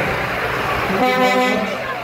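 A truck horn gives one steady toot of just under a second, about halfway through, over the rumble of a passing truck.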